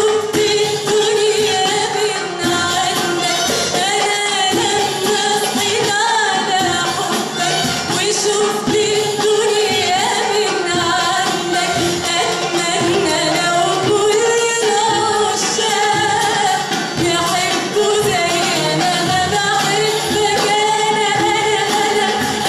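Female vocalist singing an Arabic song live, in long held notes with wavering, ornamented pitch, over a traditional Arabic ensemble of oud, nay flute and strings.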